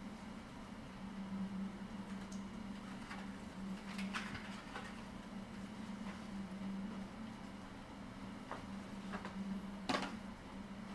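A steady low room hum, with scattered light clicks and rustles of paper and plastic being handled on a table, and a sharper click near the end.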